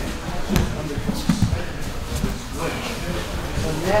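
Bodies thudding on grappling mats during jiu-jitsu training: several dull impacts about half a second apart in the first half.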